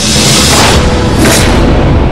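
Broadcast segment stinger sound effect: a loud rush of noise with a deep booming rumble under it, and a second, shorter rush a little over a second in, over music.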